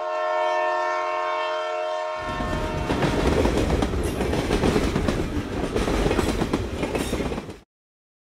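A train horn holds a steady chord for about two seconds. It gives way to the rumble and clatter of a train running on rails, which cuts off suddenly near the end.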